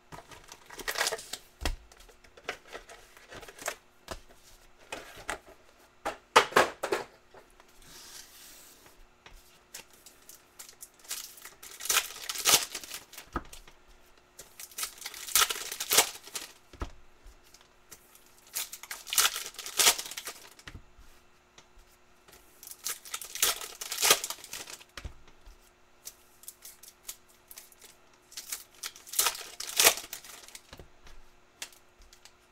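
Foil Panini Prizm basketball card packs being torn open one after another, the wrappers crinkling between tears. There is a loud tearing burst every few seconds.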